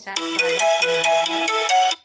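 A short, loud ringtone-style electronic tune of quick, bright, bell-like notes that cuts off suddenly near the end.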